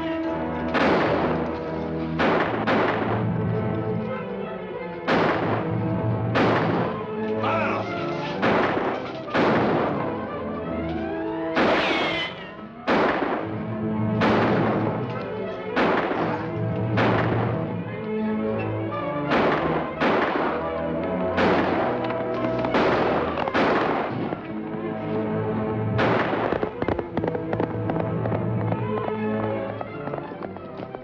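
Revolver shots in a gunfight, about twenty spread irregularly through the half minute, each with a short ringing tail, over background music.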